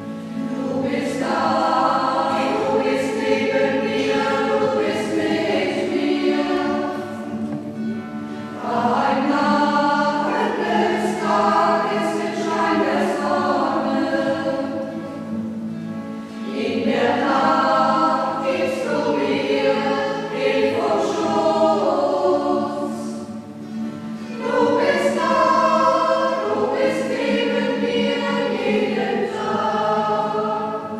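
A group of voices singing a church hymn together, in phrases of about eight seconds with brief breaks between them.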